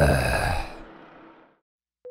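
A long, heavy sigh, fading out over about a second and a half.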